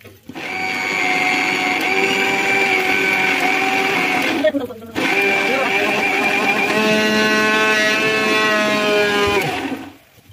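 Electric mixer grinder (mixie) motor running with a steady whine in two bursts of about four seconds each, with a short stop between. It is churning malai (cream) with cold water into butter.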